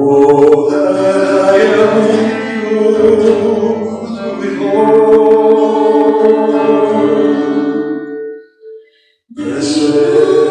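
A worship song sung to acoustic guitar, in long held phrases. The music breaks off briefly about a second before the end, then comes back in.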